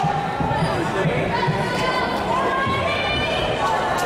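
Sound of a basketball game in a gymnasium: a basketball bouncing on the court amid crowd voices and chatter echoing through the hall.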